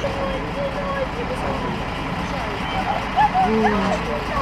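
Rescue truck's engine running steadily, with people talking in the background.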